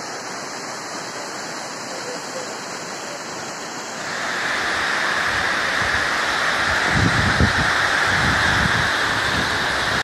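Rushing water of the Jermuk waterfall, a steady dense hiss that grows louder and brighter about four seconds in. Low rumbling bursts come in around seven to eight seconds.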